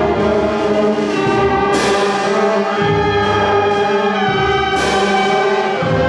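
School concert band playing sustained chords on flutes, clarinets, trumpets, baritones and tubas. A cymbal crash rings out about two seconds in and another near five seconds.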